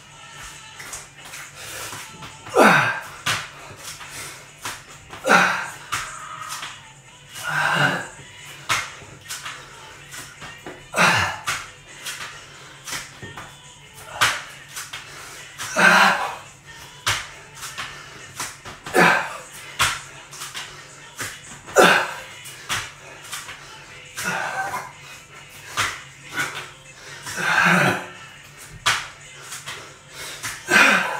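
A man doing burpees on a tiled floor: a loud grunting breath out, falling in pitch, about every two and a half to three seconds, one per rep, with sharp slaps of hands and feet landing on the floor between them.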